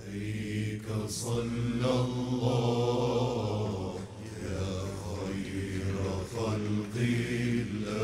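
Male vocal ensemble chanting an Islamic devotional hymn (salawat inshad) together, the voices held on long, low sustained notes that shift slowly in pitch.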